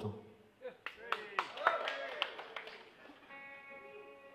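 Scattered claps and cheers from a club audience. About three seconds in, a clean electric guitar starts a chord that rings on steadily, opening the next song.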